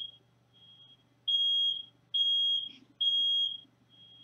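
Household smoke alarm going off: a shrill, steady high beep about half a second long, repeating about once a second, with the beeps near the start and end fainter. It has been set off by lunch cooking.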